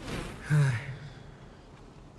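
A man's breathy intake of breath, then a short voiced sigh falling in pitch about half a second in.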